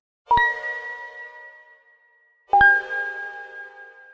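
Two bright chime strikes about two seconds apart, each ringing out and fading, the second a little lower in pitch: the sound effect of the closing logo animation.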